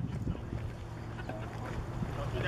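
Outdoor ambience: low rumbling noise with a steady low hum, and faint scattered sounds above it.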